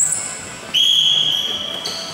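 Referee's whistle blown once: a single steady shrill tone that starts just under a second in and lasts about a second. A higher, shorter tone follows near the end.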